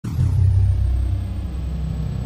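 A loud, deep rumble that starts abruptly and then holds steady: the low sound effect under an opening title card.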